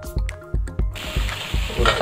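Background music with a steady beat; about halfway through, the hiss of marinated fish pieces frying in hot oil in a pan comes in under it, loud and steady.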